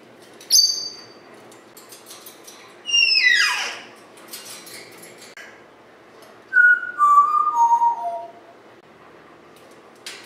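African grey parrot whistling: a short high chirp, then a long falling whistle, then four notes stepping down the scale.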